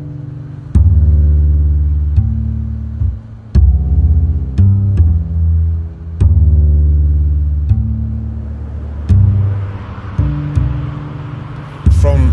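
Background music of deep plucked bass notes, each struck and left to ring and fade, roughly one every second or so. Over the last few seconds a steady rushing hiss rises underneath, which fades in like distant traffic.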